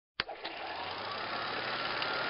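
Steady outdoor street background noise with a low hum, cutting in suddenly with a click just after the start and slowly growing louder.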